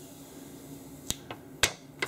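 Old plastic screen protector film being peeled off an iPhone's glass screen, giving sharp little clicks as it lets go: three in the second half, the last the loudest.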